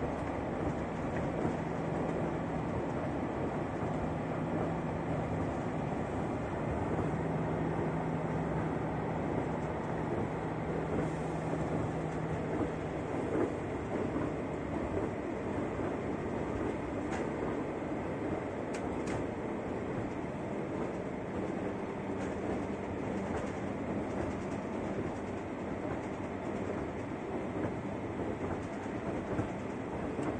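Interior of an SNCF X73500 diesel railcar running along the line: a steady rumble of wheels and running gear with a low engine hum that weakens about halfway through. A few sharp ticks come about two-thirds of the way in.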